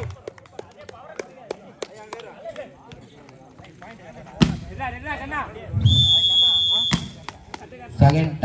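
Volleyball players' voices and light knocks between rallies, with a sharp thud of the ball about halfway through. Near the end a steady high whistle-like tone sounds for about a second, followed by a sharp smack.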